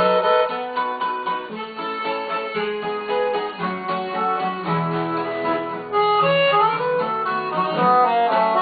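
Piano accordion and acoustic guitar playing an instrumental passage of a gaúcho folk song. The accordion carries the melody in held notes over its bass notes.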